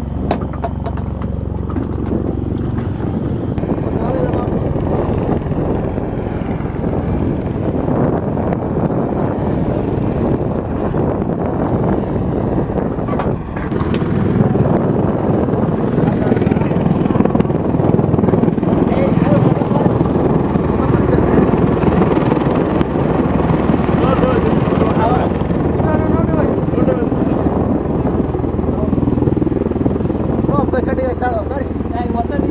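V-22 Osprey tiltrotor flying with its nacelles tilted up, its proprotors making a loud, steady rotor noise that grows louder after a cut about 14 seconds in.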